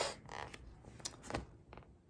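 Soft paper rustle with a few light ticks as a picture book's page is turned.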